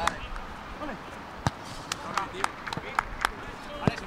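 Footballs being struck on a training pitch: a quick, irregular run of sharp thuds starting about a second and a half in, over faint distant voices.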